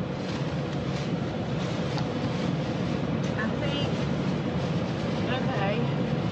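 Steady low rumbling hiss of a car cabin with the air conditioning running, with faint murmuring about halfway through and again near the end.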